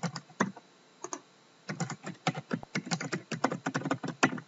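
Typing on a computer keyboard: a couple of single keystrokes, a brief pause, then a quick run of keystrokes as a username and password are entered.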